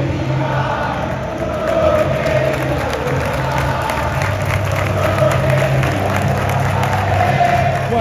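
Large football crowd in the stands singing a chant in unison, held notes over a continuous roar of voices.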